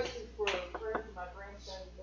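A voice talking quietly at some distance from the microphone, with two short clicks about a second in.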